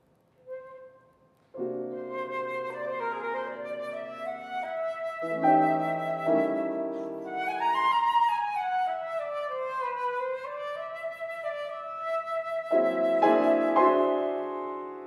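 Concert flute and grand piano playing the instrumental introduction of an art song. A lone flute note sounds first. About a second and a half in, the piano enters with held chords, under a winding flute melody that rises and falls.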